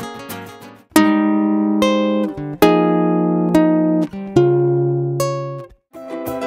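Acoustic guitar playing slow chords: a busier passage fades out in the first second, then six chords are struck about a second apart, each left to ring and die away.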